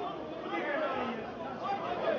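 Stadium ambience: several people's voices calling and shouting over one another, with a steady background hiss, from players on the pitch and a thin crowd of spectators.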